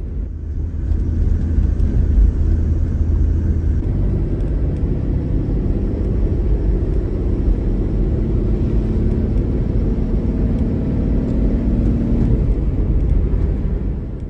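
Engine and road noise heard from inside the cab of a Toyota Land Cruiser Troop Carrier ("Troopy") driving along: a steady low rumble that grows louder about a second in.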